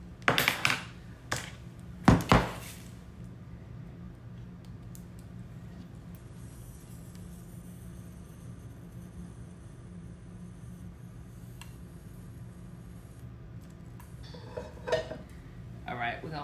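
Metal wick trimmer clinking against a glass candle jar and being set down: a few sharp clinks in the first two and a half seconds. Then a long quiet stretch with a low steady hum, and a few more knocks near the end.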